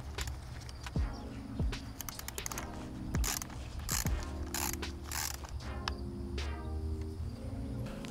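Hand socket ratchet clicking in runs as it undoes the 12 mm bolt holding the neutral lock plunger on a Subaru WRX shifter assembly.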